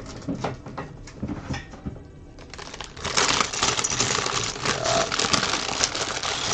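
A plastic bag of Lego pieces being handled, the loose plastic bricks clicking and rattling inside, then from about three seconds in a dense, continuous crinkling of the plastic bag as it is opened and a hand rummages inside.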